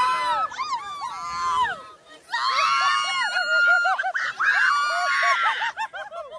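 Several riders on a water raft ride screaming and laughing together, high and overlapping, in two bouts with a short lull about two seconds in.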